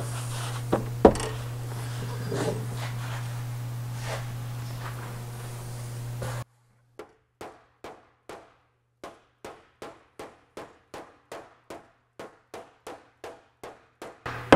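A body-work slapper striking a heat-marked spot on an Austin-Healey 3000's sheet-metal shroud, short even strikes at about three a second, knocking down a dent in the warmed panel. Before that, a steady low shop hum with a couple of sharp knocks, which stops abruptly about six seconds in.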